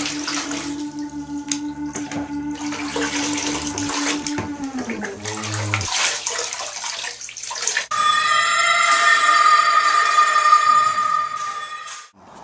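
Water being poured and splashing in a bathtub, under a steady low drone that slides down in pitch and stops about six seconds in. From about eight seconds a louder, steady high tone takes over and cuts off at the end.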